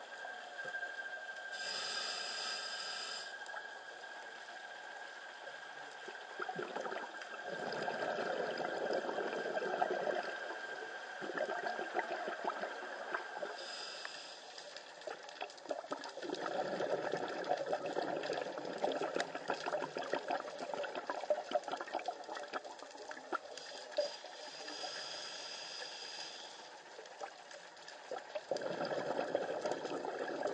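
Scuba diver breathing underwater through a regulator, three slow breaths in all: each a short hissing inhale followed by a longer rush of bubbling exhaled air.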